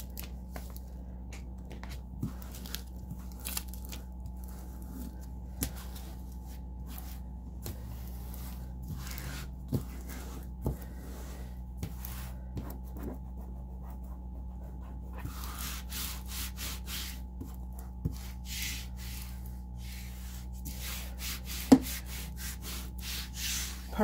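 Hands rubbing and pressing transfer paper down over a vinyl decal on a tabletop: short scuffing strokes of skin and paper, sparse at first and coming thick and fast in the last third, with light taps and one sharp tap near the end. A steady low hum runs underneath.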